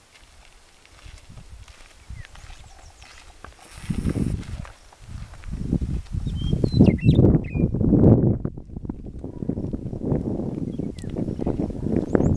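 Wind buffeting the microphone, rising to a loud, uneven rumble about four seconds in, over footsteps on a gravel road.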